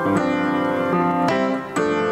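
Piano playing sustained chords that change about every half second, with a short dip in level near the end.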